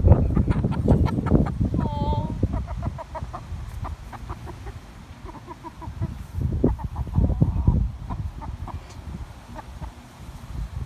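A hen clucking. One short call bends up and down about two seconds in, followed by scattered brief clucks. A low rustling noise fills the first few seconds.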